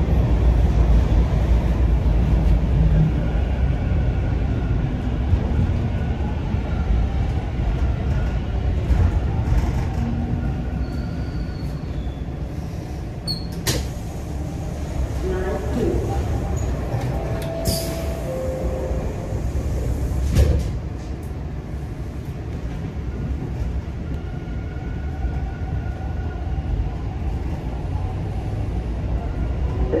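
Inside a Toronto subway car (TTC Line 2 T1 train): the low running rumble eases as the train stands at a station. About 18 seconds in, a door chime of two falling tones sounds, followed by a thud of the doors closing, and the rumble builds again as the train pulls away near the end.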